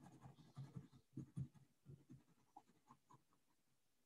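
Faint pencil shading on sketchbook paper: short, irregular strokes, several a second.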